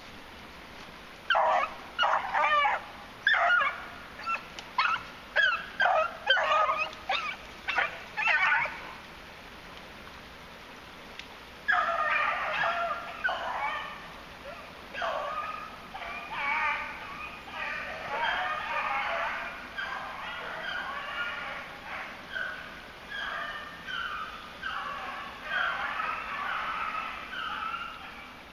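Beagles baying on a rabbit's trail. A string of separate barks for several seconds, a short pause, then from about halfway through several hounds giving voice at once in steady overlapping cry.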